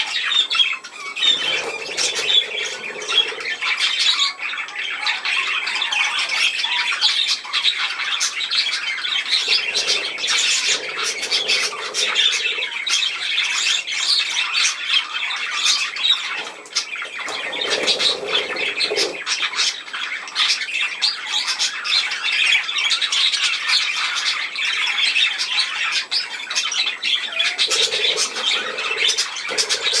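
A flock of budgerigars chattering continuously, many chirps and squawks overlapping.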